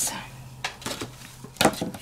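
A few sharp clicks and light taps of hard craft items being handled on a desk, with paper rustling as a folded card piece is picked up.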